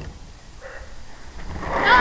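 A domestic cat meowing: a faint call about half a second in, then a louder, short meow near the end.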